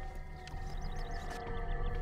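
Film background music: a held, steady note with a quick run of short high notes over the middle of it.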